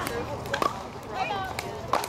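Two sharp pocks of pickleball paddles hitting the hard plastic ball, about a second and a third apart, over background voices.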